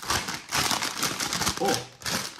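Plastic snack bag crinkling and crackling as it is handled and pulled open, a dense run of sharp crackles.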